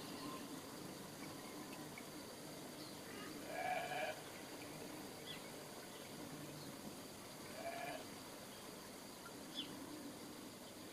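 An animal calls twice, short pitched calls about four seconds apart, over a quiet background with a few faint bird chirps.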